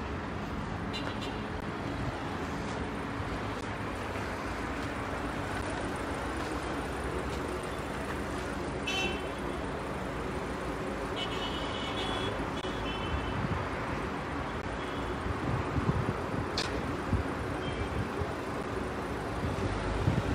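Steady city street traffic noise, with a few short high-pitched notes about nine seconds in and again around eleven to twelve seconds in.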